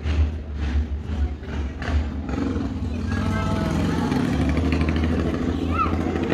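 People talking in the background over a steady low rumble, with a few soft knocks in the first two seconds.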